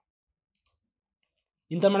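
Two faint, quick computer mouse clicks close together. A man's voice starts near the end.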